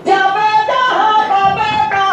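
A Jharkhand movement song sung by a male singer-songwriter in a high, shrill voice, starting suddenly at full level with long held notes.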